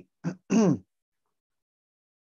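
A man clearing his throat: two short rasps in quick succession, the second longer and falling in pitch.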